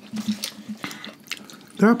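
Close-up eating sounds: a run of small, sharp wet clicks and smacks from mouths chewing White Castle sliders, mixed with the handling of cardboard slider boxes. A voice starts just before the end.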